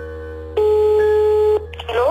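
A telephone ringback tone, one steady beep about a second long, over sustained electric-piano chords: a call ringing out before it is answered.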